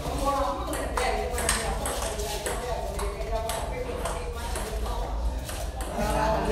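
Table tennis ball clicking sharply off rubber paddles and the table, an irregular series of hits, with voices talking underneath.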